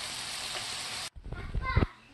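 Beef steaks and whole garlic cloves sizzling in a hot frying pan, a steady hiss that cuts off abruptly about a second in. A few low knocks and a short voice follow.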